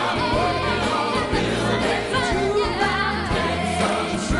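Gospel song: voices singing together, choir-like, over a band with held bass notes.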